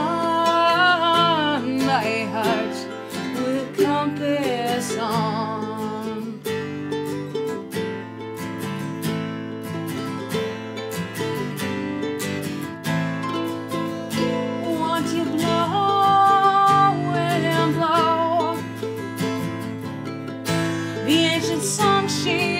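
Acoustic guitar strumming and a ukulele playing together in an instrumental break of a Celtic-style ballad. A woman's voice holds the last sung note, wavering, for the first couple of seconds.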